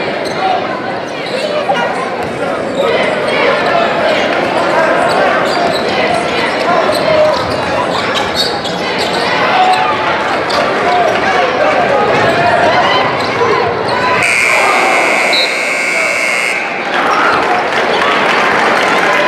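Gym crowd noise with a basketball bouncing on a hardwood court during play, then about fourteen seconds in the scoreboard buzzer sounds one steady tone for nearly three seconds, ending the third period.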